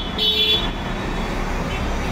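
A vehicle horn gives a short toot in the first half-second, over a steady background of street traffic.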